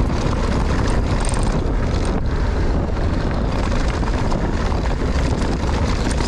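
Wind rushing over an action camera's microphone, with knobby tyres rolling over a dry dirt trail as a mountain bike descends at speed. The noise is loud and steady throughout.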